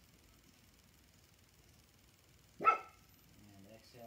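A dog barks once, sharply, about two and a half seconds in.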